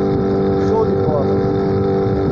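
Small outboard motor running steadily at cruising speed, with a brief voice about a second in.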